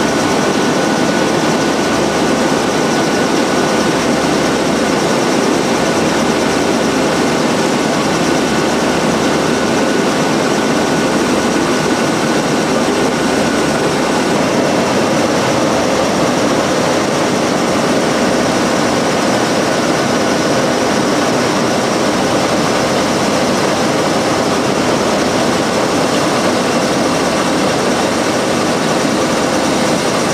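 Strecker sheeter, a reel-to-sheet cutting machine, running: a steady, loud machine noise with a faint high whine held on one note.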